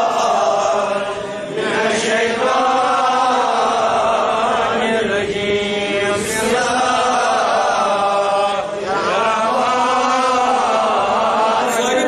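A man's voice chanting melodically, long held phrases that waver and glide up and down in pitch, with two brief breaks for breath.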